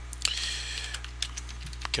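Computer keyboard typing: a quick run of sharp key clicks as a short word is typed, over a steady low hum.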